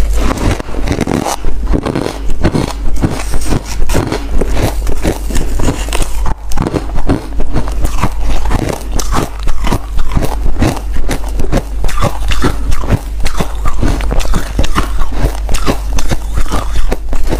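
Crunching bites and chewing into a slab of powdery freezer frost, a dense run of crisp crunches several times a second over a steady low hum.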